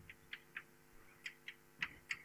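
Chalk writing on a blackboard: about half a dozen faint, short, irregular taps and scratches as the chalk strikes and drags across the slate.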